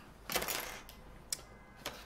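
A plastic box of sewing-thread spools being picked up and handled on a countertop: a soft rustle, then one sharp click.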